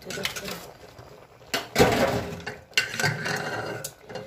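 Indistinct voice sounds, loudest about two seconds in, with a few light clicks.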